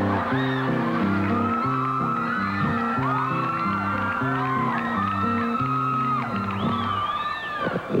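Live music with a bouncy repeating bass line under an audience cheering and whooping, with many short high whoops and squeals on top.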